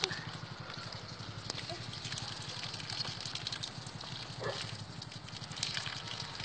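Water splashing and sloshing in a plastic tub, with scattered small clicks, over a steady low hum.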